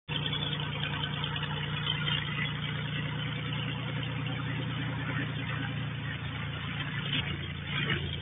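Light single-engine propeller airplane running steadily, a low propeller drone with an even beat.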